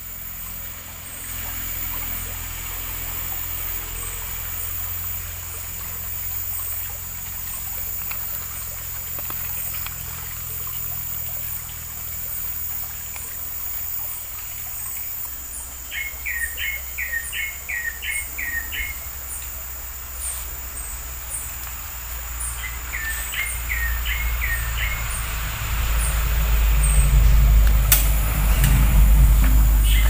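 A bird calling in two short runs of quick repeated notes, past the middle and a little later, over a steady high whine with faint ticks about once a second. A low rumble grows louder near the end.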